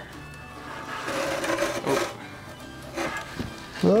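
A new heater core being set into a Scout II's steel heater box, its foam-taped edge rubbing and scraping against the box for about a second, with a few lighter scrapes later. Quiet background music runs underneath.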